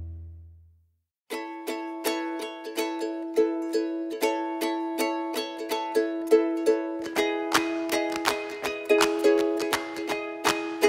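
Background music. A low held note fades out over the first second, and after a brief gap a light plucked-string instrumental starts. It has a steady run of plucked notes over a held tone and grows fuller about seven seconds in.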